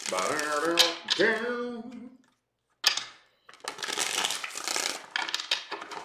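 A brand-new Golden Universal Tarot deck being riffle-shuffled by hand: its stiff cards snap once and then flutter together in a rapid run of clicks in the second half. Before that comes about two seconds of a man's murmuring voice.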